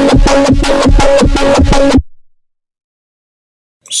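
A distorted, melodic 7th neurobass synth patch made in Serum, heard clean before the FL Studio post-processing. It plays a sustained pitched bass with a rapid rhythmic pulse and cuts off about two seconds in.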